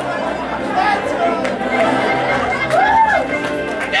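Audience chatter filling a large theatre hall, many voices overlapping, with music playing underneath.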